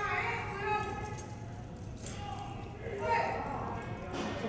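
Voices calling out, too indistinct for words to be made out, once near the start and again about three seconds in.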